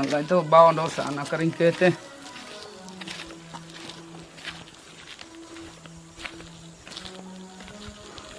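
A voice with a quickly wavering pitch for about the first two seconds, then background music of slow, held low notes at a lower level.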